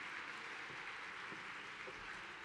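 Audience applause: steady, fairly soft clapping from a large crowd.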